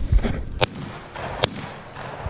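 Two shotgun shots, just under a second apart, fired at a flushing game bird from some distance away.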